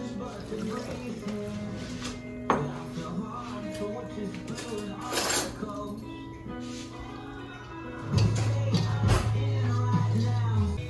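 Background music with held notes over a steady bass line, the bass moving to a lower, louder note about eight seconds in. A couple of short knocks sound over it.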